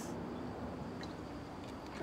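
Low steady background hum of the outdoor surroundings in a pause between words, with a faint tick about a second in.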